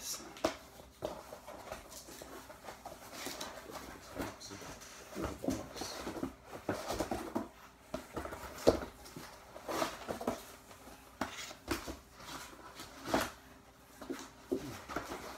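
Cardboard record mailers being lifted out of a cardboard shipping box and handled: irregular scraping and rustling of cardboard on cardboard, with short knocks, the sharpest about two-thirds of the way through.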